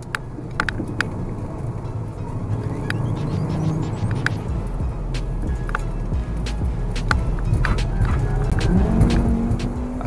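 Engine and road noise heard inside the cabin of a Volkswagen Golf Mk6 with the 2.5-litre five-cylinder, driven hard through curves. The engine note climbs and then holds near the end.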